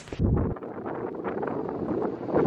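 Wind buffeting the microphone outdoors: a deep rumble about half a second long, then steady noise with scattered rustles and knocks.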